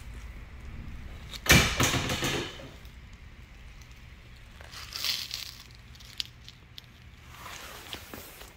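Handling and movement noise from someone crouching and shifting about: rustling and scuffing, with one loud burst of noise lasting about a second, starting about a second and a half in, and a few small clicks later on. A faint steady low hum runs underneath.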